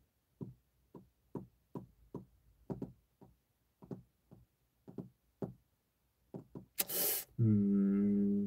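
A run of soft, dull taps or knocks, about two to three a second, somewhat uneven in spacing. Near the end comes a loud breath into the microphone, then a man's short low hum, 'mm'.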